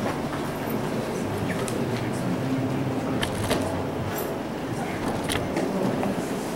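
Room noise of a gathering in a hall: a steady low hum with faint murmur and shuffling as people move about and take their seats, broken by a few sharp clicks and knocks.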